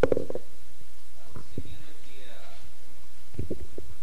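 Handheld microphone being handled and passed on: a sharp thump at the start, then scattered low knocks and rumble through the PA, over a steady low hum of the sound system, with faint voices in the room.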